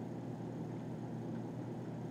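Steady, faint background hum and hiss: the room tone of a video-call audio feed, with no distinct event.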